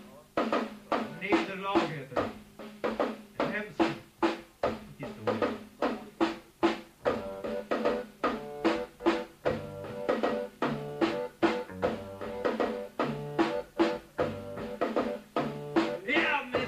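Live band playing an instrumental lead-in: a drum kit keeps a steady, fast beat under held accordion chords, and low bass notes join about halfway through.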